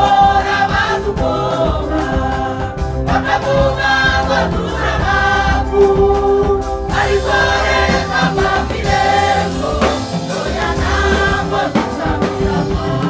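Church choir singing a Kinyarwanda gospel song in harmony, with instrumental accompaniment and a steady beat.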